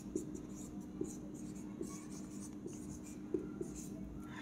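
Marker pen writing on a whiteboard: faint, short strokes, about six of them, spread through the whole stretch.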